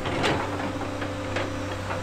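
Excavator's diesel engine running steadily, with a brief clatter about a quarter second in.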